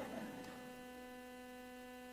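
Faint steady electrical hum from the hall's sound system: one low tone with evenly spaced overtones, heard as the reverberation of the last spoken words dies away.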